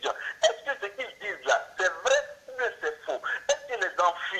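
Speech: a voice talking continuously, with brief pauses between phrases.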